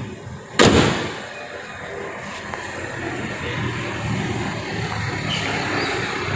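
The steel hood of a 1997 Opel Blazer SLI is slammed shut once, a single sharp bang with a short ring, followed by a steady low background noise.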